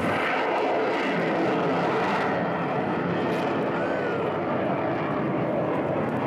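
Rocket booster of a ship-launched Tomahawk cruise missile burning as it climbs away: a loud, steady rushing noise that starts suddenly and holds without a break.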